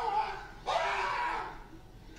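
A person's voice from the playing clip: a short bit of speech, then a loud shout or scream about a second long partway in.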